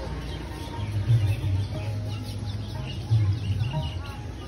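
Small birds chirping, quick short calls that grow busier in the second half. Under them runs a low rumble that swells roughly every two seconds.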